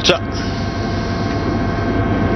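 Steady mechanical drone of a vehicle on the live race sound, even and unchanging, after the tail of a spoken word at the very start.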